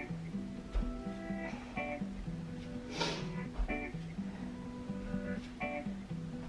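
Background music: a plucked guitar playing a repeating pattern of notes over a steady low line.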